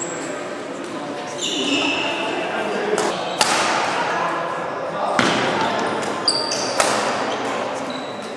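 Badminton racket strings hitting a shuttlecock in a rally, several sharp cracks in the second half, with sports shoes squeaking on the wooden hall floor. Voices chatter in the background, echoing in the large hall.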